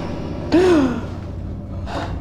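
A short startled gasp from a person, its pitch rising and then falling, about half a second in. A faint steady low drone sits underneath.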